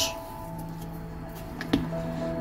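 Soft background music with long held notes, and a single faint click near the end.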